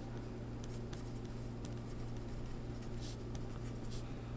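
Pencil writing on paper: faint scratching strokes as a word is written, over a steady low hum.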